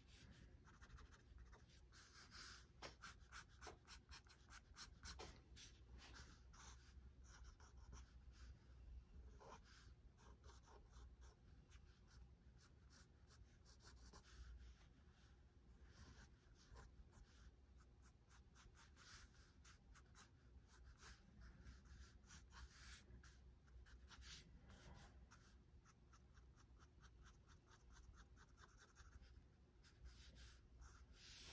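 Pen nib scratching across drawing paper in quick, irregular inking strokes, faint. The pen is an old Fountain Pentel.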